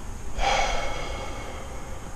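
A man's big sigh: one long breathy exhale that starts about half a second in and fades out over about a second.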